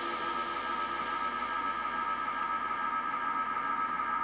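Steady background hum and hiss with a constant high-pitched tone, unchanging throughout.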